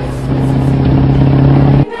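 Car engine running, a loud steady low drone that swells and then cuts off abruptly near the end.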